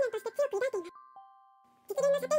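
A woman's voice reading aloud in Japanese over a soft music-box melody. The voice stops about halfway through, leaving a few held music-box notes ringing alone, and the voice starts again at the very end.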